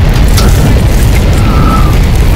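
Synthetic tornado sound effect from the FxGuru phone app: a loud, continuous deep rumble of wind, with faint crackles above it.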